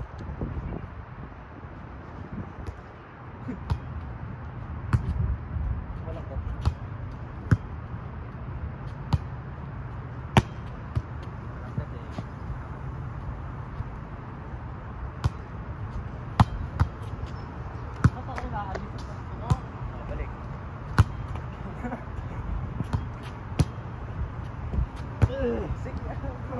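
Volleyball hit back and forth in a pepper drill: sharp slaps of hands and forearms on the ball every second or two. A steady low hum lies underneath.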